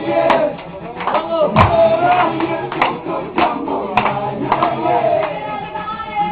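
Party dance music playing with men's voices and shouts over it, and a few sharp claps or smacks at irregular moments.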